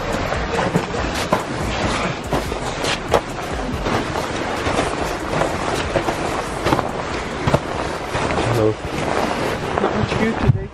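Footsteps crunching in snow, with close rustling and handling noise on the microphone.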